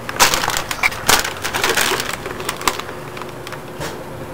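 Plastic chip bag crinkling and rustling in rough, irregular bursts, dying down to a few small clicks about two-thirds of the way through.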